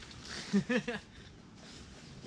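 A brief bit of a man's voice, a short untranscribed utterance about half a second in, then only faint outdoor background.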